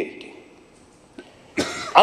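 A man coughs once, sudden and loud, near the end, after a short pause in his speech.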